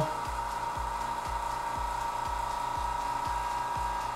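Electric vacuum pump running steadily as it draws the air out of an acrylic vacuum chamber: a constant hum with a low pulse about three times a second.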